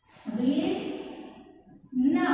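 A woman's voice: one drawn-out vocal sound lasting about a second, starting a moment in and trailing off.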